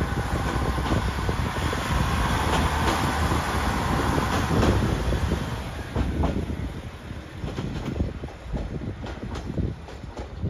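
Kishu Railway diesel railcar pulling away, its engine running and wheels clicking over rail joints. The sound grows fainter after about six seconds as the car moves off.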